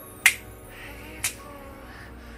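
Two finger snaps a second apart, sharp and loud, over faint background music.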